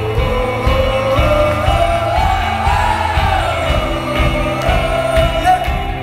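Live indie rock band playing: a sung melody of long held notes over a steady drum beat, with guitars and keyboard.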